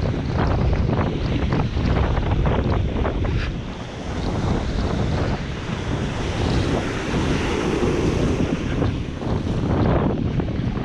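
Ocean surf breaking and washing up over the sand, with wind buffeting the microphone. The frothy wash swells into a louder hiss a little after halfway through.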